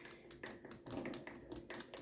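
A metal spoon stirring powder into green juice in a glass mug: light, irregular ticks of the spoon against the glass.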